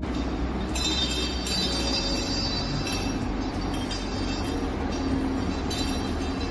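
Small metal toy ball rolling on a tile floor and ringing with high, clear chime-like tones, strongest from about a second in to three seconds and briefly again near the end, over a steady low rumble.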